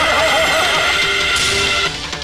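A loud amplified cry that wobbles up and down in pitch several times a second, like a whinny, over stage music. About halfway through it settles into a steady held note.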